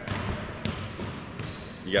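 Background din of a basketball gym, with balls bouncing faintly on the court as a few soft thuds. A thin, steady high tone sounds in the last half second.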